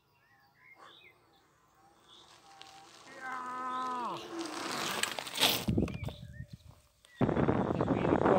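Electric kick scooter with a front hub motor riding up and past close by, a held tone falling away just before a rush of tyre and air noise peaks as it goes by. Near the end, steady wind noise buffets the microphone while riding.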